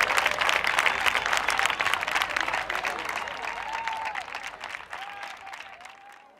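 Audience applauding, the clapping dying away steadily over a few seconds.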